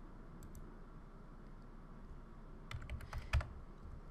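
Computer keyboard keystrokes: two faint clicks near the start, then a quick run of about six keys about three seconds in, typing a short number (2.5) into a field, over faint background hiss.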